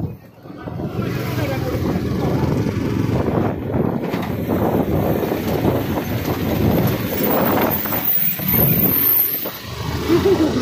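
Riding noise on a moving motorcycle: the engine running at road speed with rushing road and air noise, and other traffic passing.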